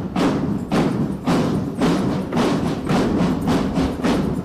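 Military academy drum band playing a steady marching beat, with strong drum strikes about twice a second.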